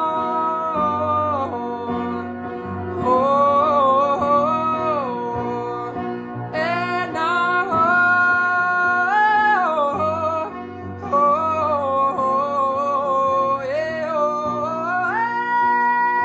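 A male voice singing wordless runs that slide up and down between notes over piano chords, ending on a long held high note near the end. The piano is completely detuned.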